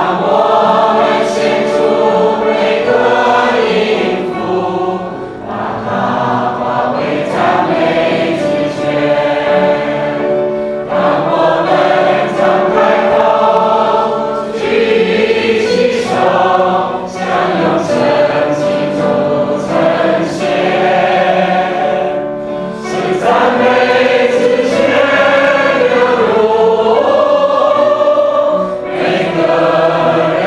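Choir singing a Christian praise song in long sustained phrases.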